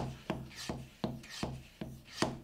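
Hand vacuum pump on a juice storage container being worked up and down, a rhythmic rubbing stroke about three times a second, drawing air out through the one-way valve. The resistance is building as the container nears vacuum.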